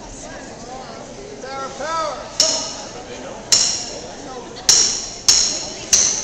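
Drumsticks clicked together to count the band in: five sharp, ringing clicks, the first three about a second apart, then two at twice the speed.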